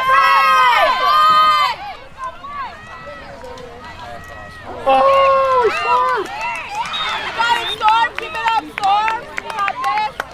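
Girls' voices shouting and cheering, loud and high-pitched at the start and again about five seconds in, quieter chatter in between. A run of short sharp clicks or claps fills the last few seconds.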